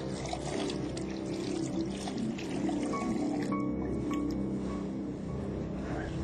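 Background music with steady held chords, over tap water running into a sink as hands are rinsed under it.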